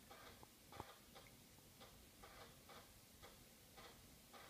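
Near silence with faint, regular ticking, about two or three ticks a second.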